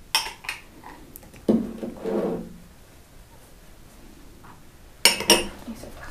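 Kitchen utensils clicking and clinking against a baking tray as a poppy-seed filling is spread, with a few sharp clicks just after the start and another cluster about five seconds in. A brief murmured voice is heard about a second and a half in.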